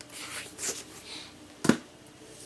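A book being handled: paper rustling for about the first second, then one sharp knock near the end.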